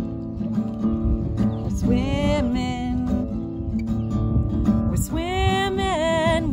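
Acoustic guitar strummed steadily with a woman singing a children's action song in short phrases, about two seconds in and again near the end.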